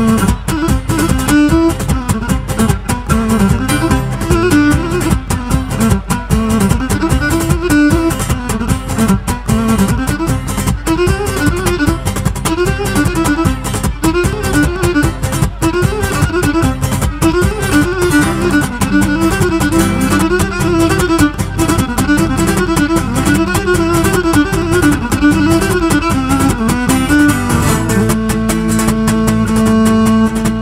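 Live Cretan band playing an instrumental dance passage: the Cretan lyra carries a repeating, looping melody over strummed laouto and a steady percussion beat. A couple of seconds before the end, the melody settles into long held notes.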